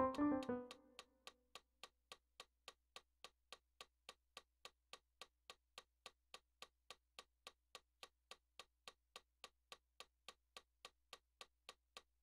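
A keyboard phrase on a digital piano ends and its notes die away about a second in; then a steady metronome click, about three ticks a second, keeps time alone over a faint low hum.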